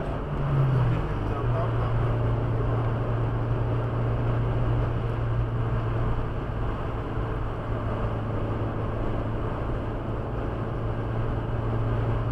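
Car interior at highway speed, about 105 km/h: steady road and tyre rush with a low engine drone. The drone dips slightly in pitch about a second in, then holds steady.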